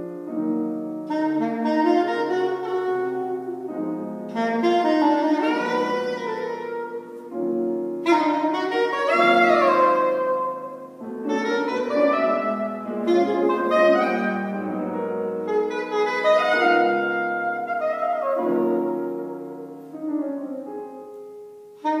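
Saxophone playing held notes, some bending and sliding in pitch, with grand piano accompaniment.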